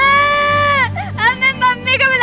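A girl wailing in long, drawn-out cries. The first is held for nearly a second and falls away at the end, followed by shorter, broken sobbing cries.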